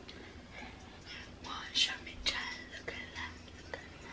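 A person whispering a short phrase, breathy and soft, starting about a second in.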